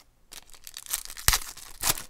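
Plastic-foil wrapper of a sports trading card pack being torn open and crinkled by hand, in a few sharp rips with the loudest near the end.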